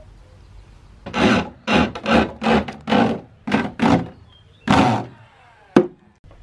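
Handsaw cutting through a wooden board: about eight rasping strokes, roughly two a second, with a short pause before the last one, then a single sharp knock near the end.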